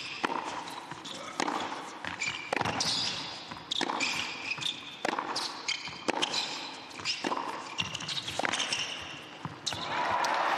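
Tennis ball being struck back and forth by racquets in a long baseline rally on an indoor hard court, about one sharp hit a second, nine or so in all, with short higher-pitched sounds around the hits.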